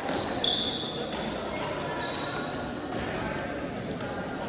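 Echoing gymnasium din of several badminton games: light racket hits on shuttlecocks and two short high squeaks of shoes on the court floor, one about half a second in and one about two seconds in, over children's voices.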